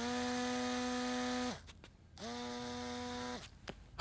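Samsung smartphone vibrating with an incoming call: two steady buzzes, the first about a second and a half long, the second a little shorter and quieter, with a brief gap between.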